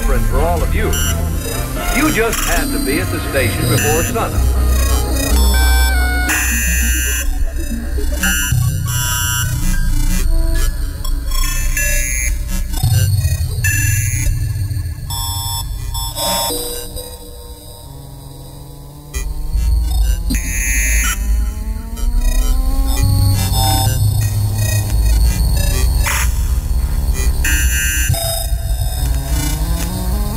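Live electronic sound collage played on a mixer and controllers: choppy, glitchy fragments that cut abruptly every second or so over heavy bass. About halfway, a pitched tone glides slowly upward, then bends back down over several seconds. There is a brief quieter stretch before the bass returns.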